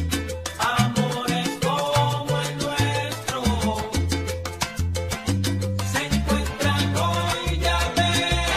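Salsa romántica recording playing, with a bass line in short repeated figures under dense percussion and melodic parts.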